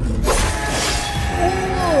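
Film trailer sound design: a sudden crash about a quarter second in, trailing a long high shimmer, under the trailer's music, with tones sliding downward near the end.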